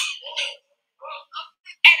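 Brief laughter: a few short, high giggles that trail off over about a second and a half, with gaps between them.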